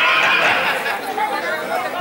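Voices only: speech with crowd chatter at a public address, heard through the microphone.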